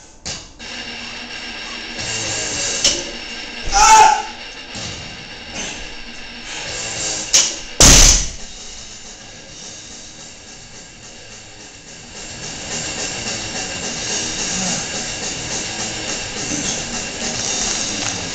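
A loaded barbell dropped onto the gym floor with a heavy thud twice, about four and eight seconds in, the second the loudest. Background music plays throughout and grows louder in the second half.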